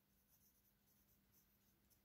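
Near silence, with the faint scratching of a pen writing on a paper textbook page.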